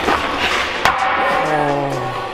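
Background music with two sharp clacks over it, one at the start and one just before a second in: a hockey stick shooting a puck on ice.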